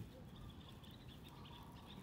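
Quiet outdoor background with faint bird chirps.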